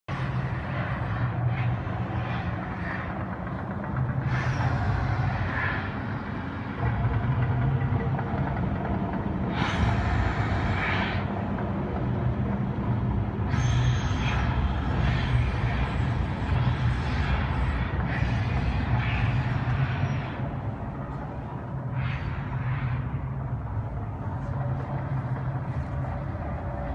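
A steady low mechanical hum and rumble, with several swells of hiss that each last a second or two.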